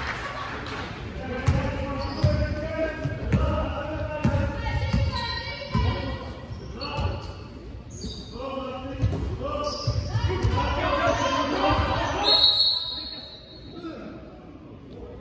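Basketball bouncing on a sports-hall floor in irregular thuds that echo in the large hall, with players' voices calling over them. A high, steady squeal about a second long comes near the end.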